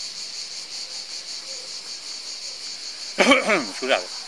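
Insects shrilling steadily in a high, evenly pulsing drone. Near the end a man's voice and a cough break in briefly.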